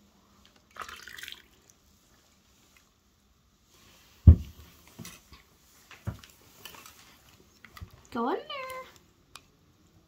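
Milk pouring briefly from a plastic pitcher into a mug, then one sharp knock just after four seconds as the pitcher is set down on the table, followed by a few lighter clicks of mugs and spoons. Near the end comes a short vocal call that rises and then falls in pitch.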